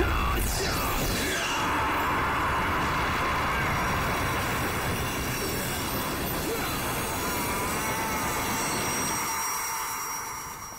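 Film sound effect of magical energy: a steady rushing, rumbling whoosh that fades away near the end.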